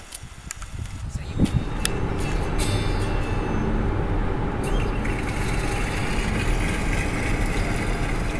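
Car driving along a highway: steady road and engine noise that sets in about a second and a half in, after a few faint clicks.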